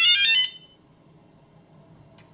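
DJI Phantom 2 Vision Plus quadcopter powering up: a short run of electronic startup beeps at stepping pitches. The beeps end about half a second in and leave faint room tone.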